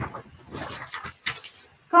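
Quiet, indistinct talking in short broken bursts, with no other clear sound.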